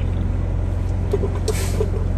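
Refrigerated trailer's reefer unit running steadily with a low, even, pulsing drone. A brief burst of noise comes about one and a half seconds in.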